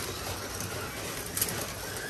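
Carrera Digital 1/24 slot cars running on a plastic track: a steady whir of their small electric motors and tyres, with one sharp click about one and a half seconds in.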